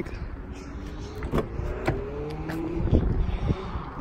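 Rear passenger door of a 2019 Toyota RAV4 being opened: several sharp clicks from the handle and latch, the strongest about three seconds in, over a faint slowly rising hum.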